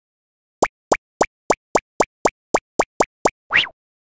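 Cartoon sound effects for an animated intro: eleven short, evenly spaced pops at about three a second, then a single longer swoosh near the end.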